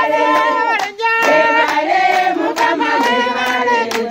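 A group of women singing together and clapping their hands in time, about two claps a second. The singing drops out briefly about a second in.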